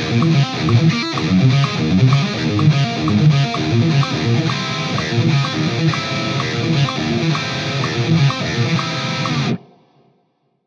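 Electric guitar, on a distorted metal tone, playing a fast, repeating odd-meter thrash riff. The playing stops abruptly near the end, leaving silence.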